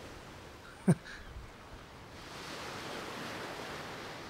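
Sea surf washing onto a beach: a steady hiss that swells in the second half. About a second in there is one brief, falling, voice-like sound.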